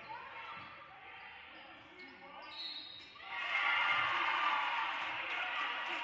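Basketball game sound in a gym: a ball bouncing on the hardwood court, with voices in the hall, growing louder about three seconds in.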